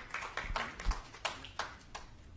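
A few scattered, irregular handclaps, fairly quiet, fading out near the end.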